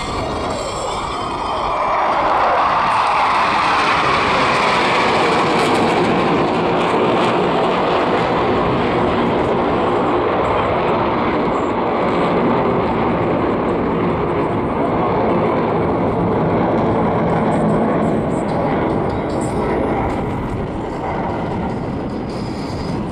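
Formation of KAI T-50 jet trainers, each with a single General Electric F404 turbofan, passing overhead: jet noise with a falling pitch sweep in the first couple of seconds, swelling to a loud steady roar about two seconds in and easing slightly near the end.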